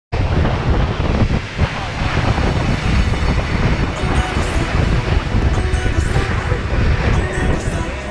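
Wind buffeting the microphone and water rushing along the hull of a motorboat under way, a loud steady rushing noise, with sharper splashes of spray from about four seconds in.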